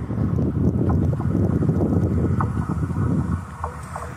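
Wind buffeting the microphone in loud, uneven gusts that ease off about three seconds in. Under it comes the faint running noise of an approaching passenger train, with a few short clicks near the end.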